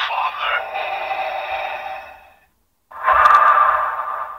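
Talking Darth Vader clip-on plush keychain playing a sound clip through its small built-in speaker after its belly button is pressed: Vader's mask breathing, thin and tinny. One long breath fades out past halfway, and a second starts about three seconds in.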